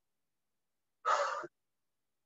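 A woman's single short, breathy exhale about a second in, a half-second push of breath from the effort of a lunge with a knee drive; the rest is silent.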